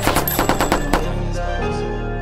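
A rapid burst of automatic-gunfire sound effects, about ten shots a second, laid over a rap track's deep bass beat. The shots stop about a second in and the beat carries on.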